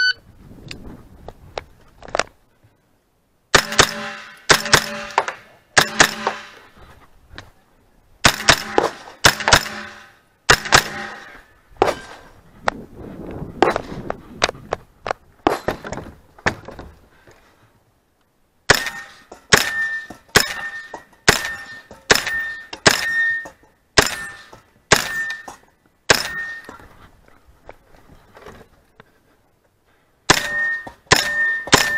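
A brief electronic shot-timer start beep, then strings of gunshots from a Just Right Carbine 9mm, fired in pairs and short groups. The shooting begins about three and a half seconds in, pauses for a couple of seconds past the middle, and carries on until near the end.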